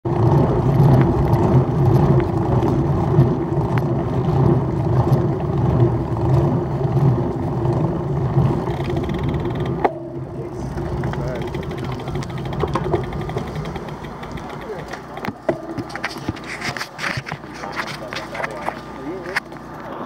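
Wind noise on a handlebar camera's microphone and tyre noise of a road bike rolling on asphalt, loud and steady, dropping off sharply about halfway as the bike slows. Quieter rolling follows, with the voices of a group of cyclists near the end.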